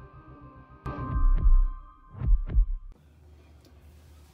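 Intro sting for a logo animation: a deep booming hit with a held ringing tone, then two quick heartbeat-like low thumps. It all cuts off about three seconds in, leaving only a low hum.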